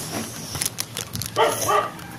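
A dog barks about one and a half seconds in.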